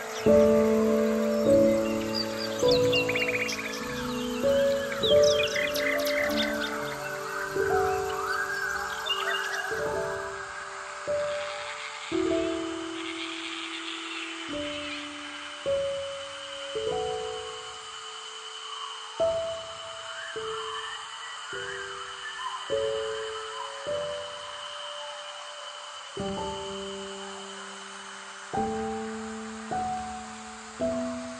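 Slow, gentle keyboard music, single notes struck about once a second and left to fade, with songbirds chirping over it during roughly the first ten seconds.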